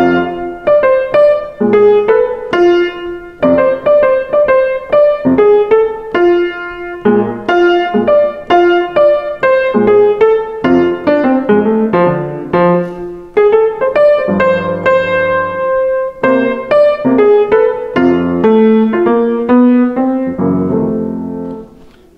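Grand piano playing a 12-bar jazz blues chorus in F. The right-hand line is built on the major blues scale, F major pentatonic with the flat third (A flat) added, over left-hand chords. The playing stops just before the end.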